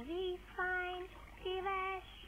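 A child singing a simple tune unaccompanied, three short held notes in a row, with a dull, muffled sound.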